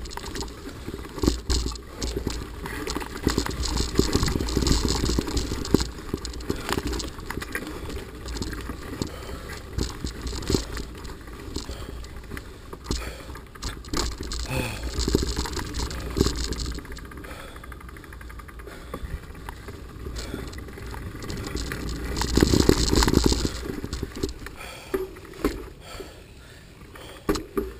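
Mountain bike riding fast down a dirt trail: the bike rattles and clatters over roots and bumps, with wind rumbling on the camera mic. It gets louder in surges as the speed picks up, most of all near the end.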